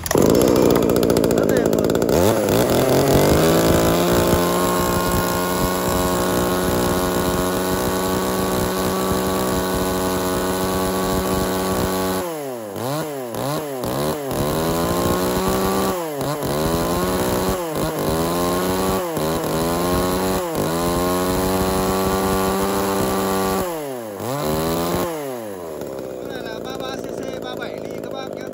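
Tanaka ECS3359 33cc two-stroke chainsaw pull-started and catching at once, then running steadily. From about 12 s to 24 s the throttle is worked repeatedly, and the engine pitch swoops up and down about six times. Near the end it settles back to a lower, quieter idle.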